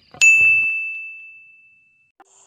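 A single bell ding sound effect: a sharp strike on one high tone that rings and fades away over about two seconds.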